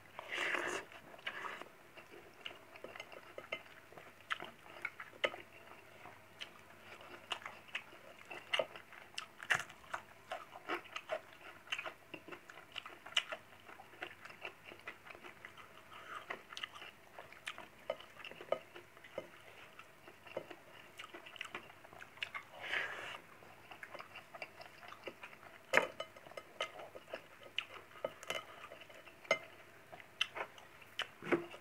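Close-up chewing and mouth sounds of a person eating rice by hand, with many short wet clicks, and taps of fingers against the plate.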